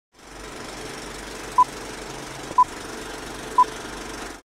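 Three short, high-pitched electronic beeps, evenly spaced one second apart, over a steady background hiss.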